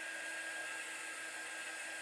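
Handheld craft heat tool blowing steadily over a sign to dry freshly applied chalk paste, a constant airy whir with a faint steady whine.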